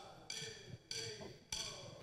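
Drumsticks clicked together in a steady count-in: three sharp wooden clicks a little over half a second apart, each ringing briefly, setting the tempo before the band comes in.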